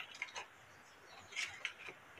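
Faint handling sounds of a sheet of sandpaper being released from an orbital sander's pad clamp and pulled off: a few soft clicks and rustles just after the start, then a small cluster about three-quarters through.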